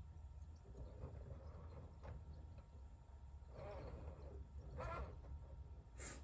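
Quiet room with a steady low hum, and two faint, short breathy exhales from a person, like soft laughs, about three and a half and five seconds in.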